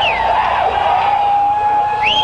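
A sustained electric guitar feedback tone from a stage amplifier, held at one steady pitch, with a higher sliding tone falling away early on.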